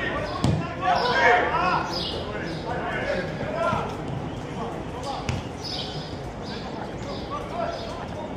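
A football being kicked on grass: two sharp thuds, about half a second in and again about five seconds in, amid players' shouted calls.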